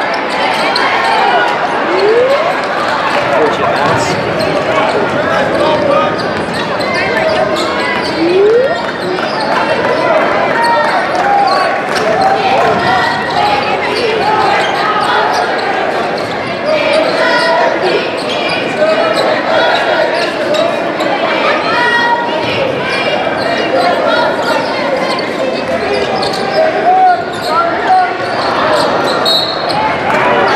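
Basketball dribbling and bouncing on a hardwood gym floor during play, heard through continuous spectator chatter and crowd noise that echoes in a large gym.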